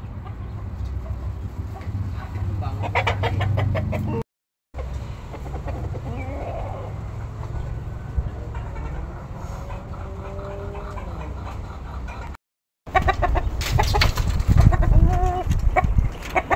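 Domestic chickens clucking around the coops, with a rooster giving one long crow that drops in pitch around the middle. Two brief gaps of silence break the sound, and it grows louder and busier near the end.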